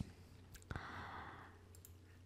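Faint computer mouse clicks and a short breath out, lasting under a second, over a low steady hum.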